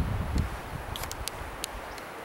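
Wind buffeting the microphone, strongest in the first half-second, then a faint steady hiss with a few light clicks about a second in.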